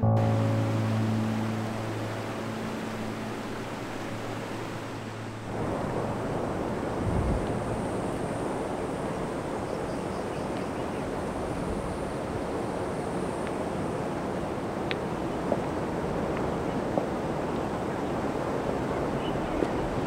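Soft background music with sustained low notes fades out over the first few seconds. It is cut off suddenly by a steady hiss of outdoor wind and surf on an exposed coastal hilltop, with a few faint ticks.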